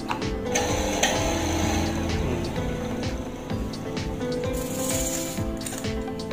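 Background music, with the electric motor of an old water pump briefly running under it, spinning a cutting disc on a mandrel on its shaft; the run is strongest from about half a second to two seconds in.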